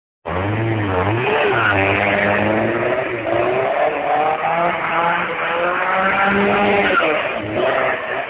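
Skoda 100's tyres squealing as the car slides around, the squeal wavering up and down in pitch, with its engine running hard underneath.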